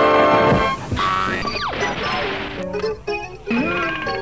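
Comedy audio collage of spliced tape: a loud held musical note breaks off less than a second in, a sound sliding down in pitch follows, and then short cut-up fragments of music and voices tumble one after another.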